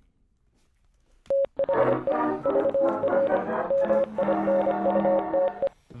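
Short musical jingle introducing a podcast segment: about a second of silence, a brief single tone, then some four seconds of music with a repeating high note over held lower notes, stopping abruptly.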